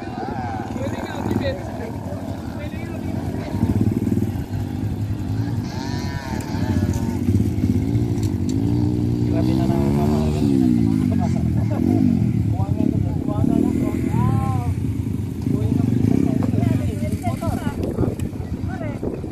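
Dirt bike engine revving up and down, its pitch rising and falling several times, with one long climb and drop about nine to ten seconds in. Voices are heard alongside it.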